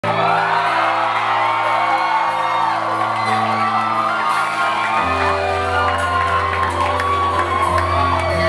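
A live band playing the opening of a song on electric guitars and drums, a deeper bass part coming in about five seconds in, with the crowd whooping and cheering over it.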